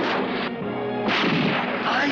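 Two pistol gunshots from a film soundtrack, one at the start and a louder one about a second in, each followed by a short echoing tail, over background music.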